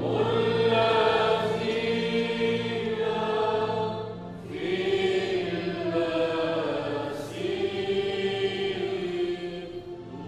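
Choir singing a slow Maronite liturgical hymn in long held notes, with a break between phrases about four seconds in and another near the end.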